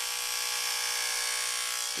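Electric hair clippers running with a steady buzz while cutting short hair.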